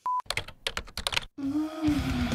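Video intro sound effects: a short test-tone beep with the colour bars, then a quick run of clicks, then a low tone that slowly slides downward as the intro begins.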